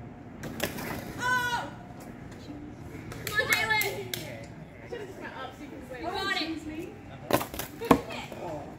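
Young people's voices calling out in short exclamations with no clear words, then a few sharp cracks close together near the end.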